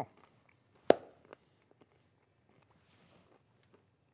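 A single sharp hand clap about a second in, followed by quiet with a faint breathy hiss near the middle.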